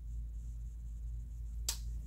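A single short, sharp click about three-quarters of the way through, over a steady low hum of room tone.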